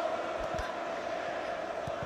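Steady crowd noise from fans in a football stadium, an even hum of many voices, with a few dull low thuds.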